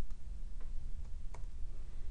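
Two short clicks from a computer mouse, the second one sharper, over a steady low hum of room or microphone noise.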